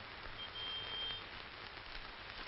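Faint, steady hiss of background noise, with a brief high, thin steady tone a little under a second in.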